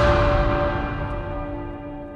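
A deep bell-like tone ringing out with many overtones and slowly fading away.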